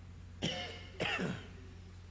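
A man clearing his throat twice into a handheld microphone, two short rough bursts about half a second apart, each falling in pitch.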